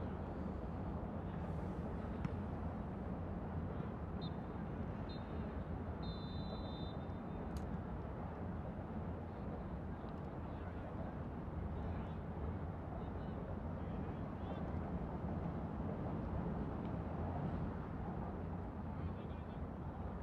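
Soccer pitch ambience: a steady low rumble with faint, distant players' voices. A brief faint high tone comes about six seconds in.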